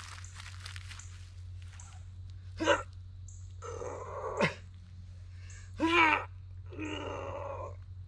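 A man grunting and straining in about four short vocal bursts while heaving by hand on a steel T-post stuck fast in the ground.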